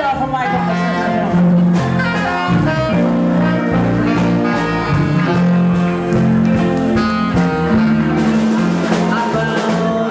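Live blues band playing, with a saxophone leading over electric guitar and bass guitar and a steady beat.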